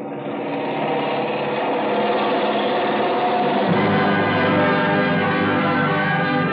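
Orchestral music swelling in sustained held chords, with a lower bass chord coming in a little past halfway: the closing curtain music of the radio drama.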